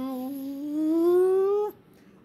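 A person humming a vocal sound effect for a teleport machine firing. It is one long tone that rises steadily in pitch, grows louder, and cuts off suddenly near the end.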